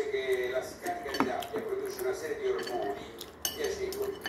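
Metal fork and knife clinking and scraping against a ceramic plate while cutting pizza, with a few sharp clinks.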